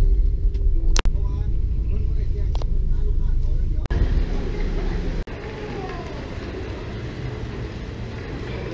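Low outdoor rumble with faint voices, broken by abrupt cuts about a second in, near four seconds and about five seconds in. After the last cut the rumble is weaker and the noise thinner.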